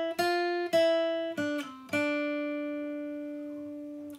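Acoustic guitar playing a slow single-note blues lick over D minor: the F on the B string's 6th fret is picked several times, then the line steps down twice and the last, lower note rings out for about two seconds.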